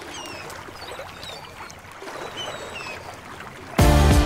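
Open-water boat ambience: water washing against the hull and wind, a steady even noise with a few faint, short high squeaks. Music comes in just before the end.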